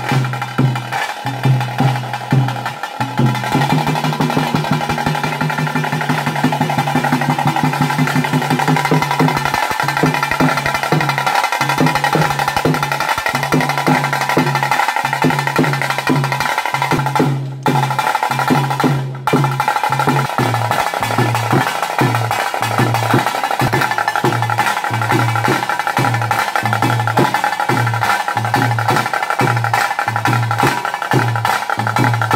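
Fast, continuous drumming over a steady sustained pitched tone: devotional music accompanying a Hindu puja. The sound cuts out briefly twice, a little past the middle.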